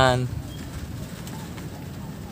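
A man's drawn-out word trails off a moment in, leaving only a low, steady outdoor background with no distinct event.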